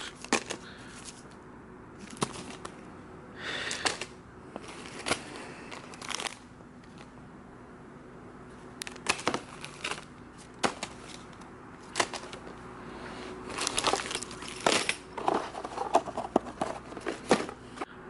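Plastic packs of fishing jigs crinkling and clicking as they are handled and dropped into a clear plastic tackle box. The sounds come in scattered bursts of rustling with sharp clicks, busiest in the last few seconds.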